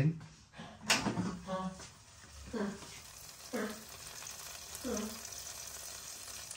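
A sharp click about a second in as the air fryer drawer is pulled open, then hot chilli cheese nuggets sizzling quietly and steadily in the basket. A few short, low vocal sounds from a man come over it.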